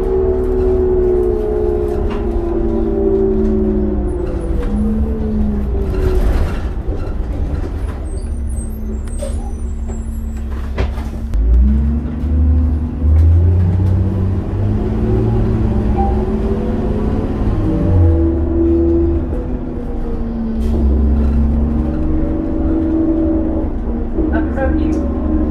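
Interior sound of a 2002 New Flyer D40LF diesel transit bus under way: engine and driveline whine falling in pitch as the bus slows, then rising again as it pulls away with a heavier low drone. A short hiss of air comes about six seconds in.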